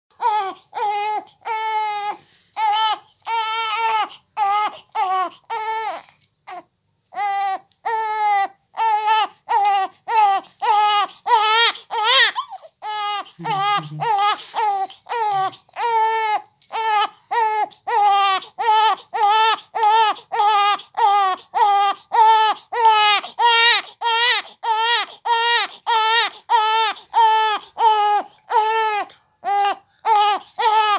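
Newborn baby crying in short, rhythmic cries, about two a second, with a brief pause several seconds in and one longer, rising wail about twelve seconds in. It is a hunger cry: the baby wants to nurse.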